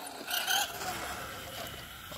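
Electric radio-controlled truck driving over concrete: a short burst of motor whine and tyre noise about half a second in, then a faint steady running noise.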